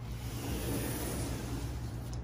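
Outdoor city noise of distant street traffic: a steady hiss over a low rumble, swelling a little about a second in.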